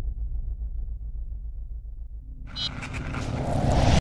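Sound design of a channel logo sting: a deep, pulsing bass rumble, joined about two and a half seconds in by a swelling whoosh with a few bright glints that grows louder to the end.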